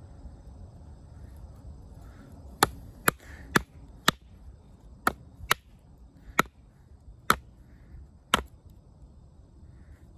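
A wooden baton striking the spine of an OdenWolf W3 fixed-blade knife, driving the blade down through a green branch to split it. About nine sharp knocks come at an uneven pace, starting a few seconds in.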